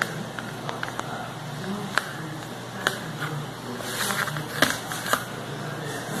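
Kitchen knife cutting through a soft corn bombocado in a metal baking pan, the blade clicking and scraping against the pan several times.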